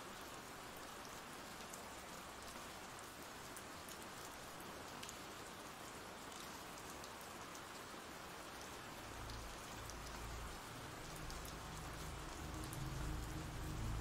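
Steady rain sound effect, a soft even hiss of rain falling on a surface. From about nine seconds in a low rumble swells in beneath it and grows louder toward the end.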